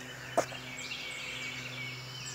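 Faint outdoor background with distant birds calling in short repeated notes over a low steady hum, and a single short click just under half a second in.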